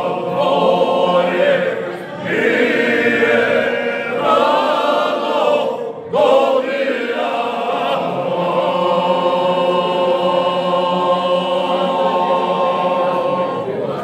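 Group of men singing a traditional folk song together a cappella, holding long notes, with brief breaks about two and six seconds in.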